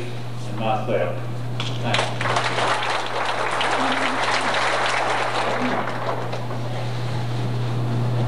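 Audience applauding, starting about two seconds in and dying away toward the end, over a steady low hum from the old videotape's soundtrack.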